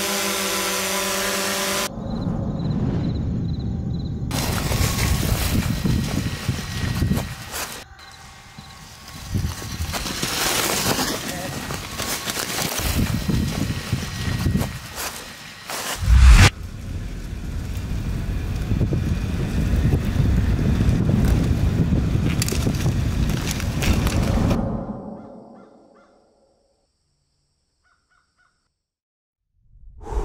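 A DJI quadcopter drone hovering with a steady propeller hum for about two seconds, then mountain bikes riding down a trail of deep dry leaves, tyres rushing through the leaf litter, with one loud thump about sixteen seconds in. The sound fades out to silence about four seconds before the end.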